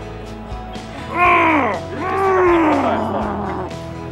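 A man's loud, drawn-out straining yells during an arm-wrestling pull, two cries each falling in pitch, the second longer, over steady background music.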